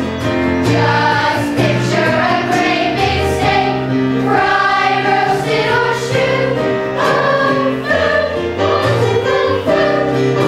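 A children's chorus singing a musical-theatre number together, over live accompaniment with sustained low notes.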